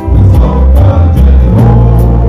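Live gospel band music with a loud bass line and a steady drum beat kept on the cymbals, with electric guitar over it.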